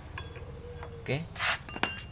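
A few light metallic clinks as a scooter's removed electric starter motor and metal parts are handled and set down, one clink near the end ringing briefly.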